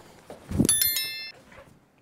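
Subscribe-button sound effect: a dull thump, then a bright, high bell ding that rings for about half a second.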